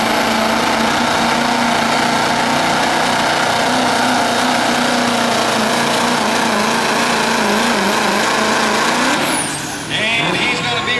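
Diesel engine of a 2004 Chevy pickup, a Duramax V8, held at full throttle while it drags a weight-transfer pulling sled, running loud and steady. About nine seconds in the engine lets off and a high whistle falls away as the pull ends.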